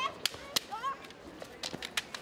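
Bamboo shinai (kendo swords) clashing and striking armour in children's kendo sparring: about half a dozen sharp cracks at irregular intervals, with a brief high shout from a fencer.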